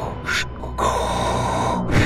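Darth Vader-style respirator breathing: a short hiss of air, then a longer, louder hissing breath from about a second in, over low background music.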